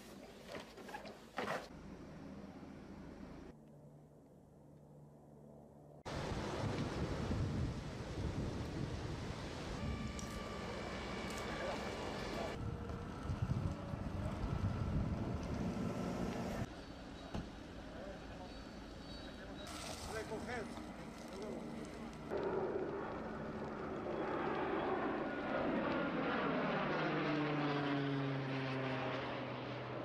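Field sound from several short cuts, mostly loud rushing noise. In the last few seconds a passing engine is heard, its pitch sliding steadily down.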